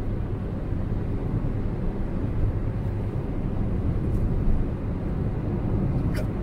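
Steady low hum of a 2019 Ford Ka 1.0 cruising on a highway, heard from inside the cabin: engine and road noise without change or events.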